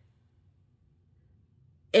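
Near silence: faint room tone for nearly two seconds, then a woman starts speaking at the very end.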